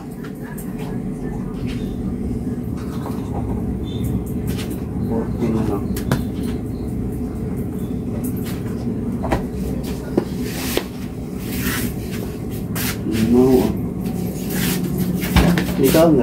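Kitchen clatter: scattered sharp knocks and clicks of things being handled at the counter and cupboards, over a steady low hum, with faint voices in the background.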